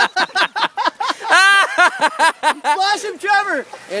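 A person laughing hard: quick repeated ha-ha's in the first second, then high-pitched whoops of laughter.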